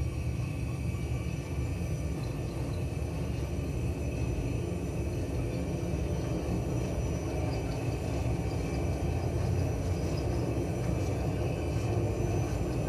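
Simulated Airbus A320 takeoff roll in a flight-simulator cockpit: a steady rumble of the engines at takeoff thrust and the wheels on the runway, with a faint high engine whine, growing slightly louder as speed builds.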